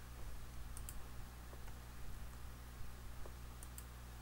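A few faint, widely spaced computer mouse clicks over a steady low electrical hum.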